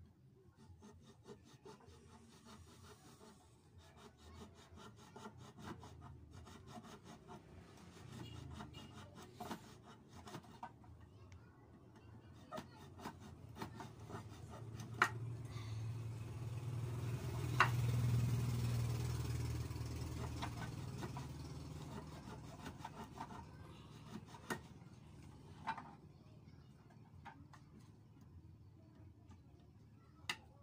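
A knife scraping and cutting at a plastic ballpen barrel being shaped into a whistle, in rapid repeated strokes with a few sharper clicks. A low rumble swells and fades around the middle.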